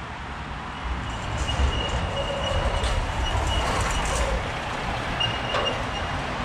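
A heavy lorry passing close by in street traffic, its engine and tyres rumbling as it draws level and pulls away. A thin high whine comes in about a second in, fades, and returns briefly near the end.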